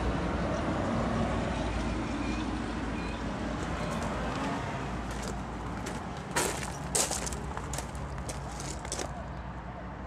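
A steady low rumble with a hum in it, like a motor running, slowly getting quieter; in the second half, several sharp clicks.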